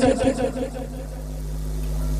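A steady low hum, slowly growing louder, heard as the voice dies away in the first half-second.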